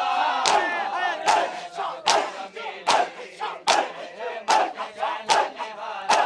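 Matam: a crowd of men beating their chests with open palms in unison, a sharp slap about every 0.8 s, seven times. Many men's voices chant and cry out between the slaps.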